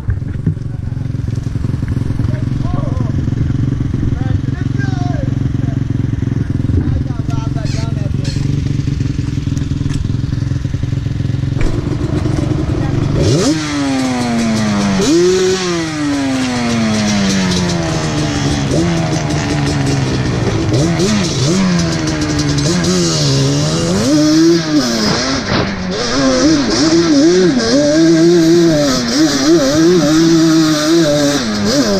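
Quad ATV engine idling steadily, then from about 13 seconds in it revs up and down repeatedly as the quad pulls away and rides along a trail, its pitch rising and falling with the throttle.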